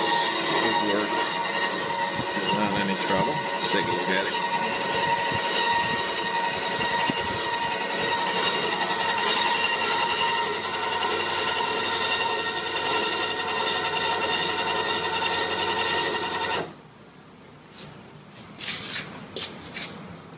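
Electric nose-gear actuator motor running with a steady, many-toned whine as it lowers the nose landing gear, then cutting off suddenly about 17 seconds in. A few faint clicks and knocks follow.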